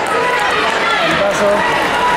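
Crowd chatter: many people talking at once in a large sports hall, with no single voice standing out.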